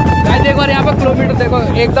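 Bajaj Dominar 400 single-cylinder motorcycle engine running at road speed, with wind rushing on the microphone.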